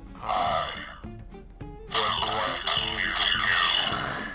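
A voice distorted through a toy voice-changer megaphone, coming out garbled rather than as clear speech: a short burst near the start and a longer one from about two seconds in.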